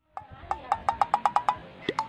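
Wood-block knocks played as a comedy sound effect: about ten sharp hollow strikes that come faster and faster, followed near the end by a quick rising whistle-like glide.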